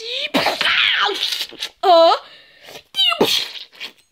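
A high voice making wordless play noises: a breathy, hissing stretch in the first second or so, then two short squeals about two and three seconds in.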